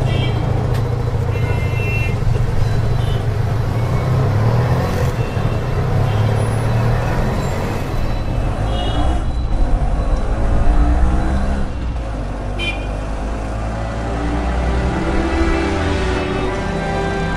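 Street traffic with a steady low engine rumble and several short horn toots, with music coming in near the end.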